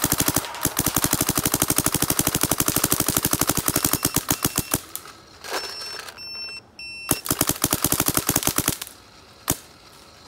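Dye DSR paintball marker, on compressed air and fitted with a soft-tip bolt and Flex Can, firing rapid strings of shots at roughly a dozen a second. The firing stops for about two seconds around the middle, then comes back for a second string and one last single shot. The setup is one that feels softer and a little quieter.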